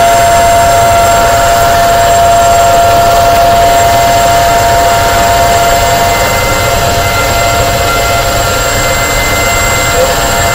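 Upright vacuum cleaner running steadily, its motor giving a constant whine over a rushing of air. It drops a little in loudness from about six seconds in, as the vacuum is tilted back.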